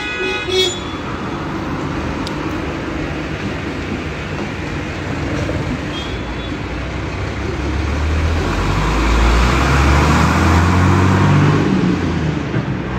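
School bus engine running at the stop amid street traffic noise, then revving louder from about eight seconds in as the bus pulls away.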